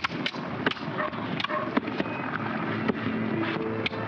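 Sword blades clashing in a duel: an irregular series of about nine sharp clacks over four seconds.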